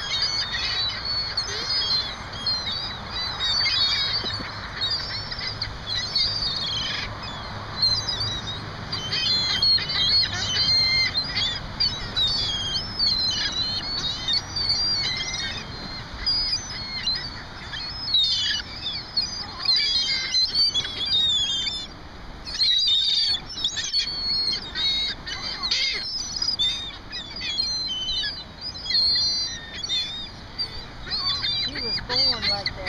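A flock of gulls crowding for food, calling over one another in a constant chatter of short, high calls.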